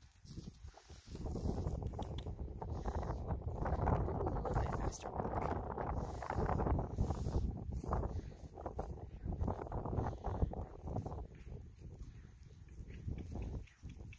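Hoofbeats of a ridden Thoroughbred gelding trotting on a dirt pen floor, mixed with a rough rumbling noise; the sound picks up about a second in and eases off near the end.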